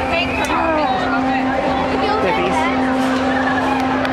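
A relay-convoy bus running slowly close by, its steady engine hum under the chatter and calls of a street crowd.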